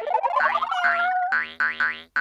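Playful cartoon music with a comic sound effect: a wobbly, rising pitched glide for about a second, then a run of short, quick bouncy notes.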